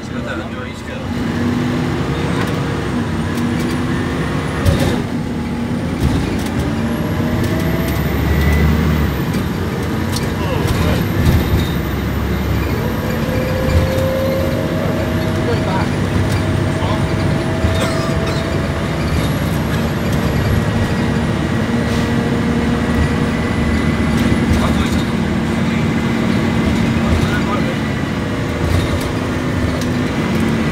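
Bus diesel engine running under way, heard from inside the passenger saloon. Its pitch rises and falls slowly as the bus pulls and changes speed, over steady road noise and scattered interior rattles and clicks.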